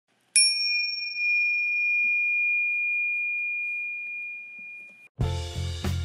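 A single bell-like ding that rings on one clear high tone for about five seconds, fading slowly. Just after five seconds, music with bass and a steady drum beat comes in.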